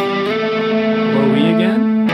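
Electric guitar playing a two-note octave shape: it is struck once and rings, then slides up the neck near the end.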